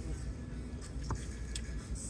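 Steady low room hum, with a single faint click about a second in.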